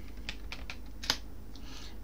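Typing on a computer keyboard: a handful of separate keystrokes, the loudest about a second in.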